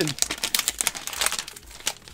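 Foil trading-card pack wrapper crinkling and crackling as it is torn open by hand, a rapid run of crackles that thins out toward the end.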